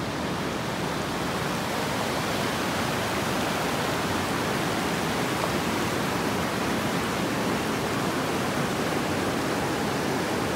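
Steady rushing of river water: an even, unbroken hiss with no separate events.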